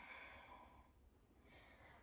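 Near silence: a faint breath from the person practising cat-cow, with a soft inhale near the end.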